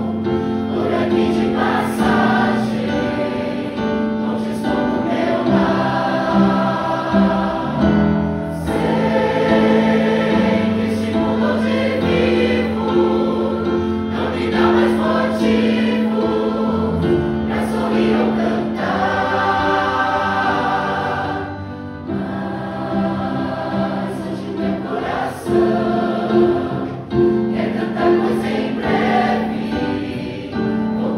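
Mixed choir of men and women singing a hymn together.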